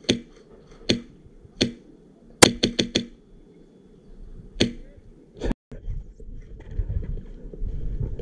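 Krytac MK18 airsoft rifle with a Wolverine Gen 2 HPA engine firing sharp shots: single shots about a second apart, a quick burst of about five around the middle, then two more single shots. After a short dropout, a low rumbling handling noise follows.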